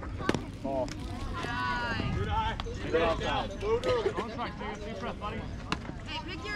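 A bat strikes the ball with a sharp crack just after the start. Excited shouting from many voices follows as the batter runs.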